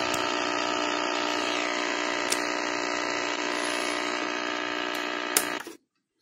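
Prunus J-160 portable radio's speaker giving a steady buzzing hum with a few faint clicks as it is switched over to the AM band; the hum cuts off sharply near the end.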